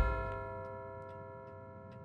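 Film transition sound effect: a deep hit whose ringing chord slowly fades, over a clock-like ticking of about three ticks a second.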